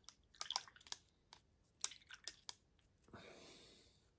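Faint, scattered small clicks and taps of a hand handling a small plastic model wagon, then a soft breath out about three seconds in.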